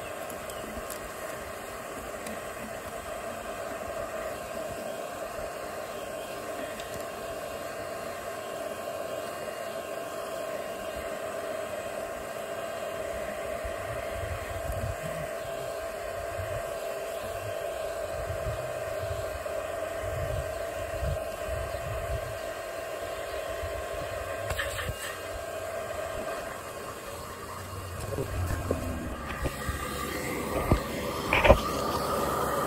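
Bee vacuum's motor running steadily with a constant whine while it sucks bumblebees from an underground nest tunnel into a collection bottle. Irregular low rumbles join in over the second half, and the whine drops away a few seconds before the end.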